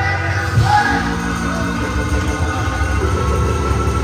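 Live gospel church music: an organ and a drum kit playing, with a man singing into a microphone over them.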